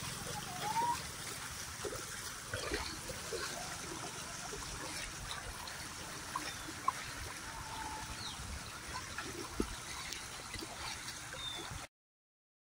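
Muddy Yamuna floodwater running and trickling over a submerged path, a steady wash of moving water with small splashes and gurgles. It cuts off suddenly near the end.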